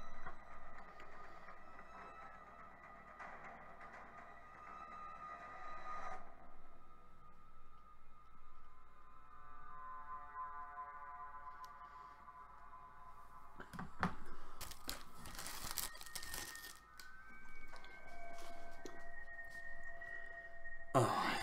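Television soundtrack playing faintly: a tense music score with held tones and a few sharp knocks about two-thirds of the way in, then a whistled tune of held notes near the end.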